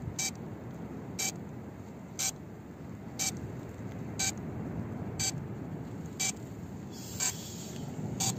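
A heat-damaged DJI Mini 2 drone beeping, a short beep about once a second, over steady low background noise.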